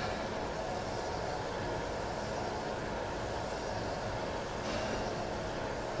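Crankshaft grinder running steadily, its abrasive wheel grinding a crankshaft journal on a final traverse to clean up the journal's radii and sidewalls.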